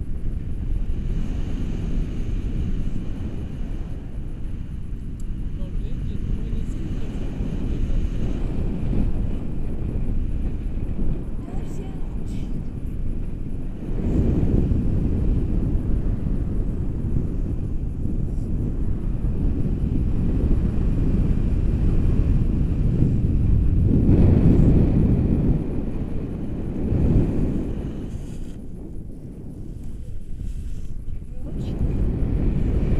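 Wind buffeting an action camera's microphone in paraglider flight: a steady low rumble that swells about halfway through and again near the end.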